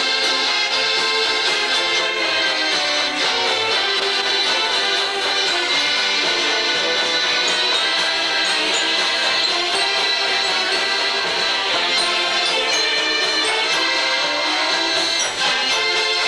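A Mummers string band playing a tune: banjos and saxophones together, steady and unbroken.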